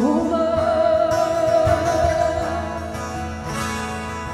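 Live vocal and acoustic guitar duo: a woman holds one long sung note with vibrato over acoustic guitar. The note fades about two and a half seconds in while the guitar plays on.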